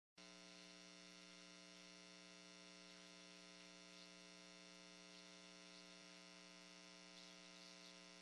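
Near silence with a faint, steady electrical hum on the audio line.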